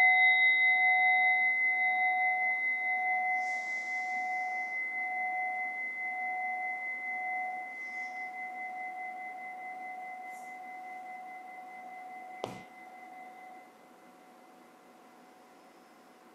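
Meditation bell ringing out and slowly fading, its low tone pulsing gently under a clear higher tone, the closing bell of a meditation session. Near the end a short knock, and the ringing stops soon after.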